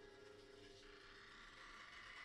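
Near silence: faint room tone with a thin steady hum.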